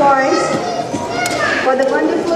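Children's voices talking and calling out over one another, with no words clear.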